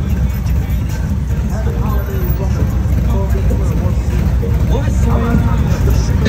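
Several touring motorcycles idling close by, a steady low engine rumble, with voices and music in the background.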